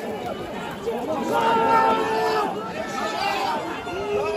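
Crowd of protesters and police shouting and talking over one another at close range, with one loud drawn-out shout held on a single pitch about a second in.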